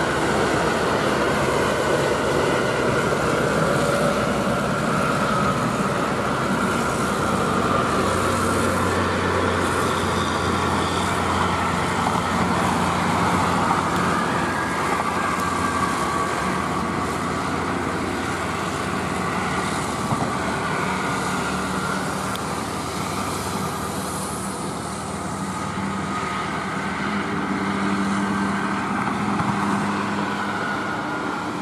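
Highway traffic: a coach bus and a heavy tractor-trailer truck passing, a steady drone of diesel engines and tyre noise, with the truck's low engine note growing louder at times.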